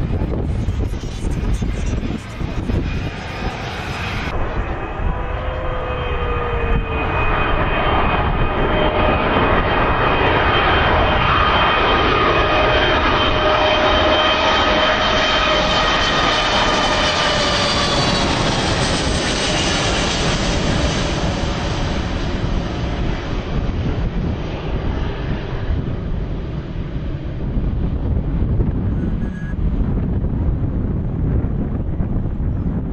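Twin-engine jet airliner, a Boeing 757, on low final approach: jet engine whine with several steady tones sliding gently down in pitch, growing louder toward the middle and then easing, over a low rumble.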